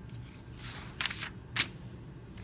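A folded sheet of copy paper being opened out and pressed flat on a table by hand: soft rustling, then two sharp crackles of the paper, about a second in and again half a second later.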